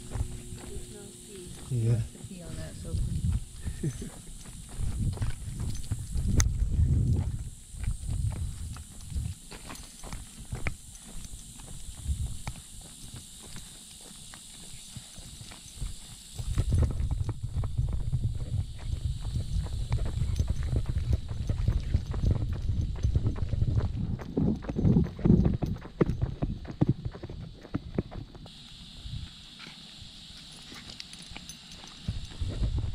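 Footsteps on a concrete sidewalk during a dog walk, a steady run of short hard steps. A low rumbling noise underlies them and is loudest for a stretch past the middle.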